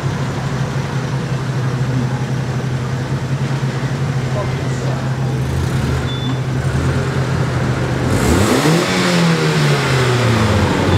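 Car engines running in slow street traffic, a steady low hum. Near the end a car pulls away and passes close by, louder, its engine note rising and then falling.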